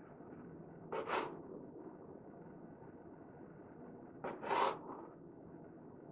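Serrated bread knife sawing through the crust of a stack of white toast bread on a wooden cutting board: two short sawing strokes, about a second in and again after four seconds, each a quick back-and-forth pair.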